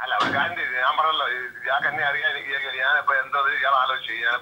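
Speech heard over a telephone line: a recorded phone conversation, the voice thin and cut off above the telephone band.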